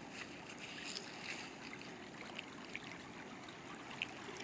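Faint flowing river water, with a few light splashes as someone wades into the shallows.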